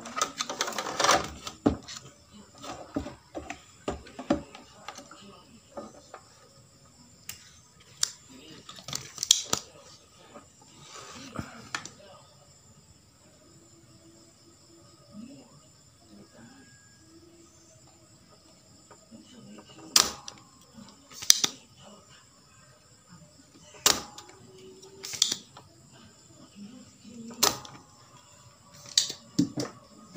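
Spring-loaded desoldering pump (solder sucker) on a TV circuit board: handling clatter early on, then a series of sharp snaps a second or two apart in the second half as the plunger is fired again and again, not clearing the solder well.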